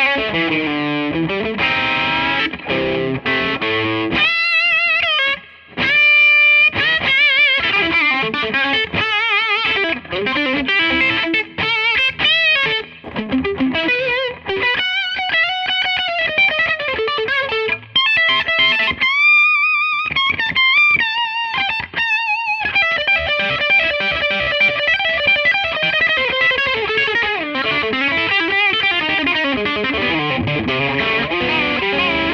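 Gibson ES-335 semi-hollow electric guitar on its bridge pickup through an overdriven amp, played as single-note lead lines full of string bends and vibrato, with a couple of brief pauses.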